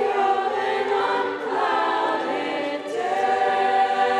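Mixed student choir of boys and girls singing sustained chords, changing to a new held chord about three seconds in.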